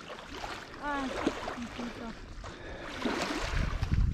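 Wind buffeting the microphone, with a faint voice about a second in and a short rush of hissing noise about three seconds in.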